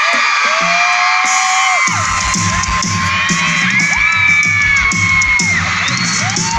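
Live pop band playing through a concert PA, heard amid a cheering, whooping crowd. A steady low drum-and-bass beat comes in about two seconds in.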